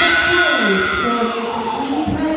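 A karateka's kiai: a loud, high-pitched shout that starts suddenly, is held for about a second and a half and slowly falls in pitch.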